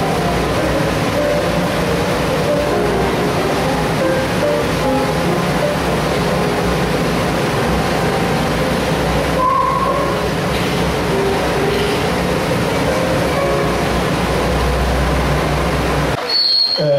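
Film soundtrack heard through the screening room's speakers: a loud, steady rumbling noise with short squealing tones scattered through it, and no dialogue.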